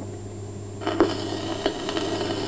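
Surface noise of a 1929 Parlophone 78 rpm shellac record in the lead-in groove before the music starts: a low steady hum, then hiss coming in about a second in, with a few crackling clicks.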